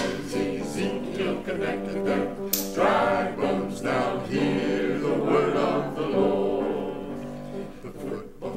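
Mixed church choir singing in long, held chords. A brief bright hiss comes about two and a half seconds in.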